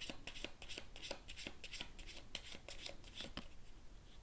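A deck of tarot cards shuffled by hand: an irregular run of quick card slaps and rustles, several a second.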